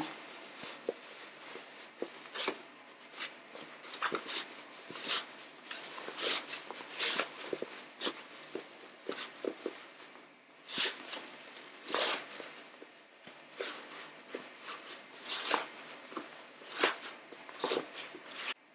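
Cotton fabric and interfacing rustling and crumpling in irregular bursts as a sewn fabric basket is worked right side out through a gap left open in its seam.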